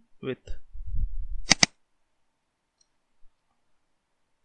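Two quick clicks of a computer mouse button about a second and a half in, over a low rumble from the desk. They come as a new element is selected in the page inspector.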